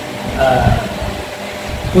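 A man's voice speaking briefly in a seated conversation, over a low steady background hum.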